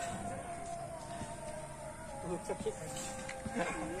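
A man's voice counting a burpee rep, "three", over faint steady background tones.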